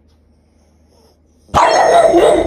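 A dog vocalising loudly, starting suddenly about a second and a half in after a quiet stretch.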